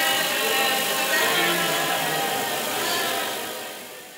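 A congregation praying aloud all at once, many overlapping voices forming a dense murmur that fades away near the end.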